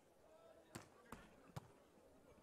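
Three short, sharp slaps of a beach volleyball being hit, about half a second apart, starting about three-quarters of a second in: a jump serve and the contacts that follow it.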